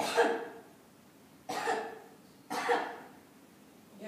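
A person coughing three times: one cough at the start, then two more about a second and a half and two and a half seconds in, each short and sudden.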